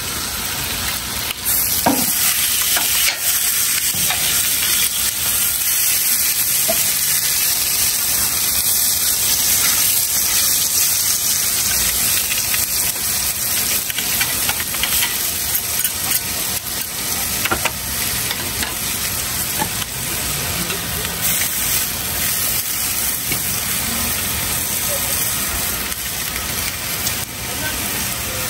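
Skewered squid and sausages sizzling on a hot flat-top griddle: a steady frying hiss.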